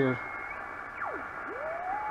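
Residual carrier of a homebuilt MC1496 double-sideband transmitter, heard as a beat-note whistle from an Atlas 180 receiver. A steady high tone drops out, then as the receiver is tuned the pitch sweeps down through zero beat and back up, settling on a lower steady tone near the end.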